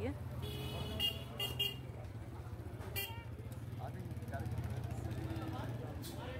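Street traffic: vehicle horns tooting several short times, mostly in the first two seconds and once more about three seconds in, over a steady low engine hum.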